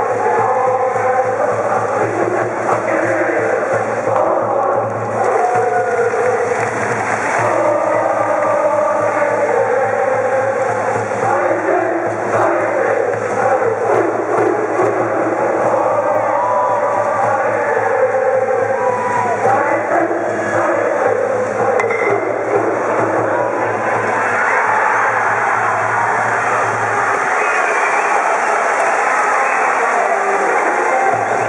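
A high school baseball cheering section: a brass band playing a cheer song while a large group of students sings and chants along. Near the end the song gives way to more jumbled crowd noise.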